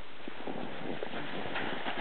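Irregular crunching and scuffing in snow, starting about a third of a second in, over a steady hiss.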